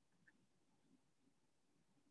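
Near silence: room tone, with one faint tick shortly after the start.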